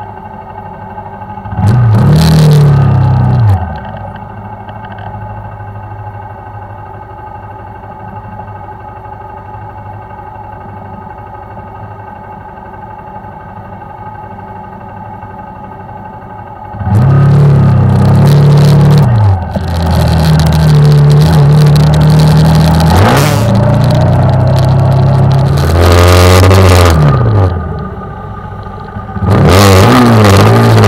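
Honda CBR125's small single-cylinder four-stroke engine idling steadily, with one quick throttle blip about two seconds in. From about 17 s it is revved hard as the bike pulls away, rising in pitch and dropping back several times as it goes up through the gears.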